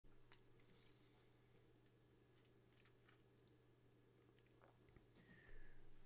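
Near silence: faint room tone with a low steady hum and a few faint small clicks.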